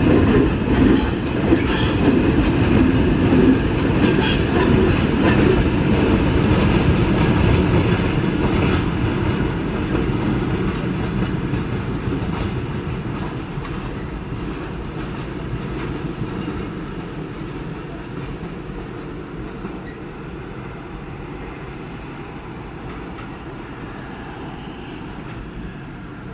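Freight train of tank wagons rolling past, wheels clattering over the track with sharp clicks in the first few seconds, then the train's rumble fading steadily as it moves off into the distance.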